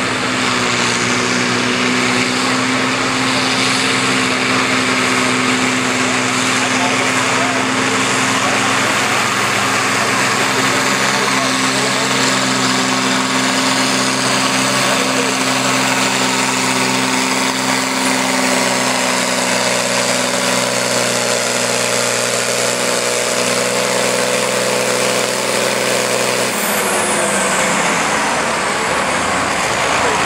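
Volvo BM farm tractor's diesel engine held at full power under heavy load as it drags a weight-transfer sled in a tractor pull, a steady loud note. About 26 seconds in, the revs drop as the pull ends.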